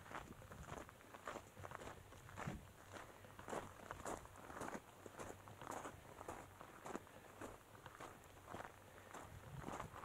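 Faint footsteps of a hiker walking on a dirt and loose-gravel trail, about two steps a second.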